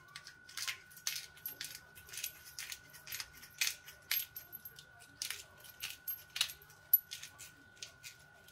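Hand-twisted pepper mill grinding pepper: a steady run of short grinding clicks, about two or three a second.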